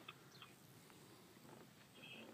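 Near silence: faint outdoor background hiss with a couple of faint, brief high chirps.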